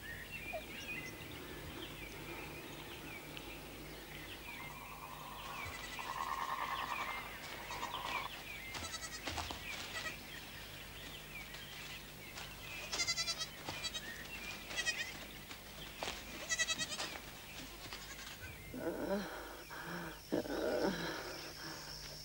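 Goats bleating, a series of quavering calls from several animals, coming more often in the second half.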